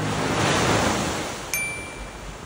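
Ocean surf washing up onto a sandy beach, one wave swelling and then drawing back, while the last strummed acoustic guitar chord dies away at the start. A short, high chime comes in about a second and a half in.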